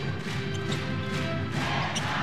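Basketball arena sound: music playing over the crowd's noise, with a few irregular sharp knocks from play on the court.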